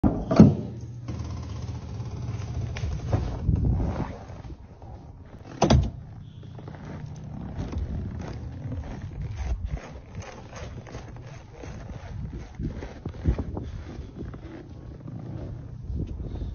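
A heavy door thuds loudly near the start and again about six seconds in, over a steady low rush of wind buffeting the microphone.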